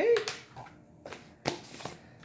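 A few short knocks and clicks, the loudest about a second and a half in, as a baking powder container is handled and set down on a wooden table.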